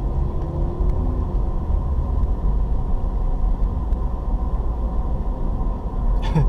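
A car driving along a paved road, heard from inside the cabin: a steady low rumble of engine and road noise.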